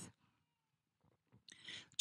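Near silence, with a short, faint breath into the microphone near the end.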